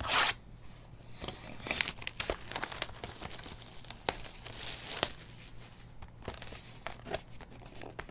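A sealed cardboard box of 2020 Topps Archives Baseball cards being torn open by hand: a loud rip right at the start, then crinkling, scrapes and small clicks of wrapper and cardboard, with a longer tearing stretch about halfway through.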